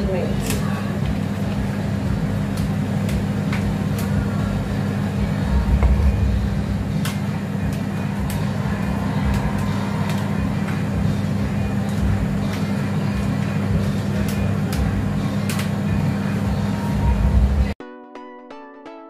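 Steady low kitchen hum with a few light clicks and taps of utensils and packaging handled over the pan; near the end it cuts off abruptly and music starts.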